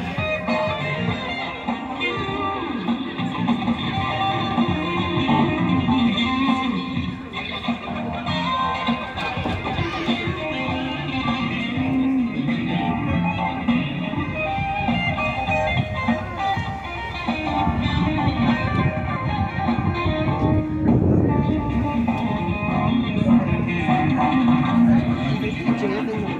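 Electric guitar played through a small amplifier, a continuous run of notes and chords.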